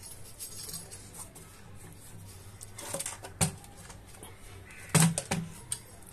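A sheet-metal amplifier chassis being turned over and handled on a workbench: a few short knocks and clatters, with a group about three seconds in and the loudest knock about five seconds in.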